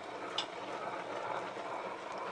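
Tabletop wet grinder running, its steel drum turning against the roller as it grinds thick urad dal batter: a steady, even whirring noise.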